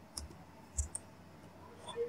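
Two computer mouse clicks, a little over half a second apart.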